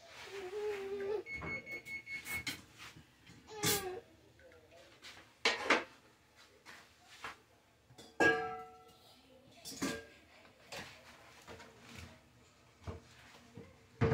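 Kitchen clatter: dishes and utensils knocking and clanking at the sink, several sharp knocks with a short ringing after them. The loudest come about five and a half and eight seconds in. A baby's brief wavering vocalising is heard near the start, and there is a short high beep around two seconds in.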